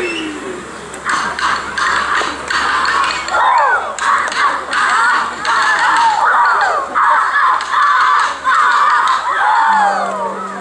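Aboriginal dancers calling and shouting in many overlapping voices through a traditional dance, with sharp beats marking time, most clearly in the first few seconds.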